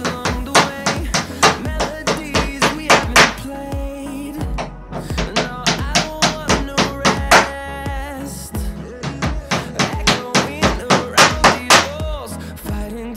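Hammer driving small nails into a wooden strip on a plywood panel, light sharp strikes coming several a second in three quick runs with short pauses between, over background music.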